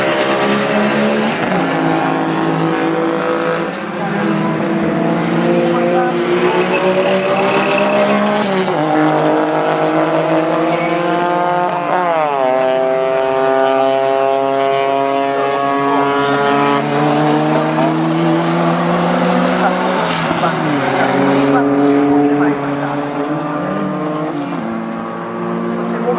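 Engine of a racing car on track, revving hard: its pitch climbs under acceleration and drops back at each gear change, then falls away as it slows before picking up again near the end.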